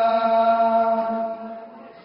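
Male voices reciting an Urdu noha (Muharram mourning chant) into microphones, holding one long sung note that fades away after about a second.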